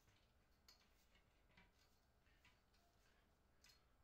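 Near silence with a few faint, scattered clicks of the carbon-fibre tripod's twist-lock leg sections being handled and turned.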